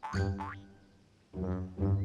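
Comic cartoon music cue: three short, low, brassy notes, the first just after the start and two more close together in the second half.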